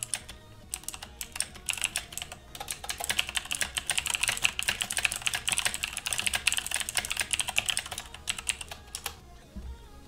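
Typing on a computer keyboard: a rapid, dense run of keystroke clicks that stops about a second before the end.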